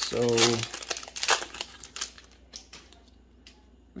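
Foil wrapper of a Magic: The Gathering Jumpstart booster pack crinkling as it is torn open and the cards are pulled out, densest in the first two seconds, then a few faint rustles and clicks.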